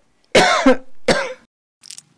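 A person coughing loudly, a short run of coughs in the first second and a half.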